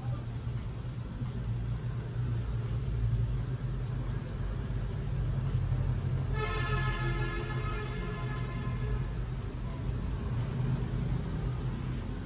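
Steady low rumble of road traffic. About six seconds in, a held pitched tone sounds for roughly three seconds, then fades.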